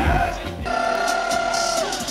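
Live popular music from a concert stage: a band plays with a heavy beat that drops out about half a second in, leaving one long held note that slides down near the end.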